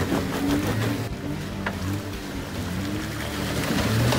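Jeep Wrangler Rubicon's engine running under load, its pitch shifting as the throttle changes, while the mud-tyres churn through mud and water.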